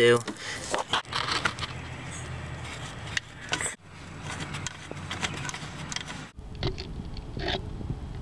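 Light scraping and small clicks of a power steering pressure hose's metal fitting being threaded in by hand, over a rustling handling noise. The sound drops out abruptly twice.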